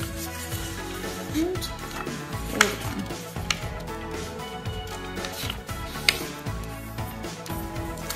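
Quiet background music, with paper handling: a paper template being folded and creased by hand on a table, giving a few sharp crackles or taps, the loudest about two and a half seconds in and again about six seconds in.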